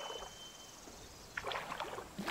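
Soft swishing and rustling of someone walking through dry grass and reeds: a short burst at the start and a longer run of steps in the second half, with a brief thin high tone near the start.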